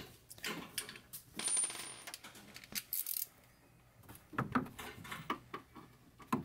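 Light metallic clinks and scrapes of a socket and wrench being fitted against the horn's mounting nut, the socket the wrong size for the nut. There is a scatter of small clicks, with two denser bursts of scraping about one and a half and three seconds in.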